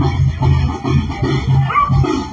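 Brass band music with a steady pulsing bass beat.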